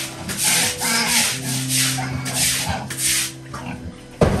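Long-handled brush scrubbing a wet concrete pen floor in repeated strokes, about two a second, easing off near the end.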